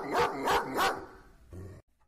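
A dog barking, three barks in the first second, then fading away.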